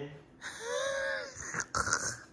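A party blower (blowout noisemaker) blown in one long buzzy toot that rises and then falls in pitch, followed by a shorter toot near the end.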